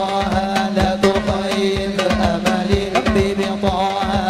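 A man singing a devotional Arabic qasidah through a microphone in a long, ornamented melody, with drums beating a quick rhythm beneath.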